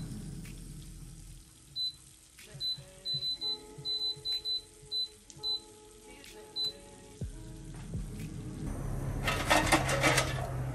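Defy air fryer's touch panel beeping: about a dozen short, high beeps in quick succession as the setting is pressed up. Near the end comes a louder rattling scrape as the metal frying basket is pulled out.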